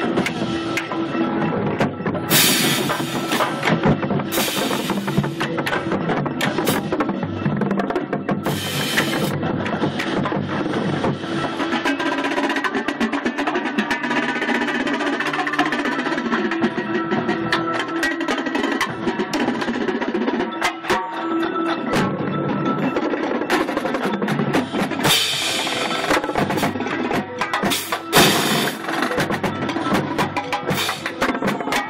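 Marching drumline playing: Pearl marching bass drums and a snare line beating out a dense, continuous run of strokes and rolls, with a few louder, brighter hits now and then.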